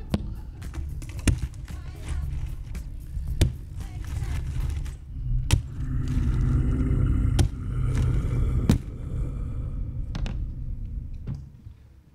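Live sound effects for a radio play: a continuous deep rumble with about six sharp knocks or thuds spread a second or two apart, and a wavering drone swelling in the middle.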